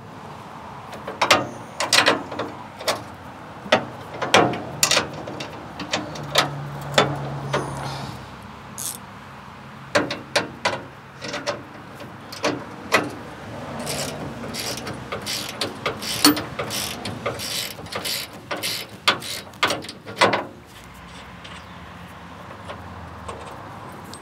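Fine-toothed ratcheting box-end wrench (GearWrench 120XP) clicking as it is swung back and forth to tighten a bolt: a long run of sharp, irregular clicks with short pauses, stopping about twenty seconds in.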